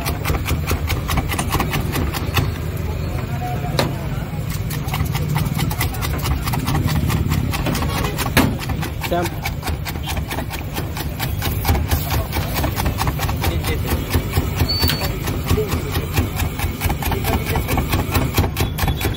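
Street-food kitchen din: gas burners under omelette pans with a steady low rumble and constant rapid crackling, and indistinct voices in the background.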